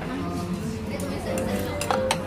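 Sushi plate with a clear plastic dome taken off the conveyor and set on the table: light clinks of plate and cover, with two sharp clinks near the end as it lands.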